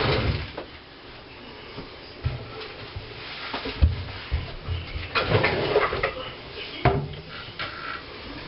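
Light knocks and rustling as things are moved about in wooden kitchen cabinets, with a longer scraping stretch a little past the middle and a sharp click near the end.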